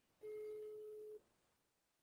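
A single faint electronic tone, one steady pitch held for about a second, as heard over a video call.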